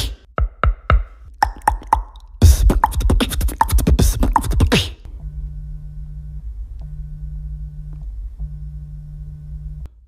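Beatboxed vocal percussion: clicks and a fast run of sharp strokes for about five seconds, then a steady low buzz that sounds three times, each lasting about a second and a half.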